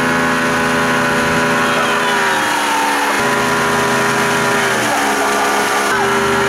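Towboat engine running steadily at speed over rushing water; its pitch drops twice, about two and a half and five seconds in.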